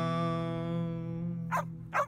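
The last acoustic guitar chord of a jingle ringing out and slowly fading, with two short dog barks near the end.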